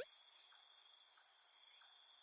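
Near silence with a faint, steady high-pitched chirring of crickets in the background.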